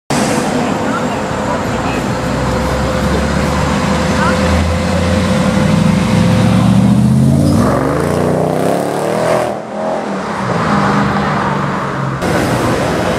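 Renntech-tuned Mercedes E55 AMG's supercharged V8 pulling away and accelerating, its note rising in pitch, with a brief dip in the sound near ten seconds before it pulls on.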